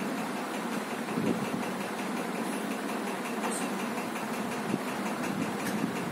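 Steady hum of a running motor with a faint, fast, even ticking.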